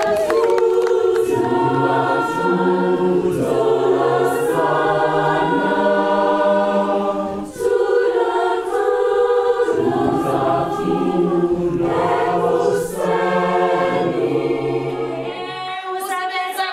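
A choir singing in harmony, several voices holding long chords, with a short break about halfway through and another shorter one near three-quarters of the way.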